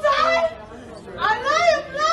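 Speech only: a woman shouting a complaint in a high, strained voice, in two short bursts.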